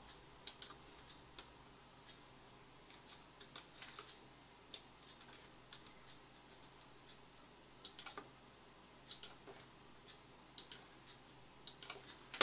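Computer mouse buttons clicking at irregular intervals, several clicks in close pairs, as points of a spline curve are placed one by one in CAD software.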